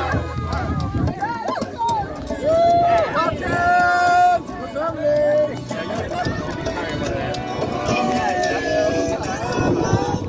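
Several voices singing and calling out together over music, with long held notes that glide up at the start and drop at the end.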